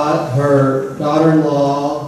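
A man's voice chanting on held, level notes: two long sung notes of about a second each, the second a little higher.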